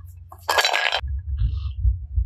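A short, sharp clatter of hard plastic about halfway through, lasting about half a second: plastic toy ice-cream pops knocking against a clear plastic plate. A low steady hum runs underneath.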